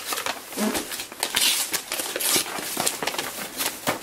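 Gift wrapping paper rustling and crinkling as it is torn off a small boxed gift set, in quick irregular crackles with two louder tearing bursts in the middle.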